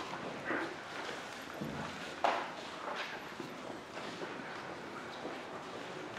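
Scattered footsteps and shoe scuffs on a hard tiled floor as people shift in place, with one sharper knock a little over two seconds in.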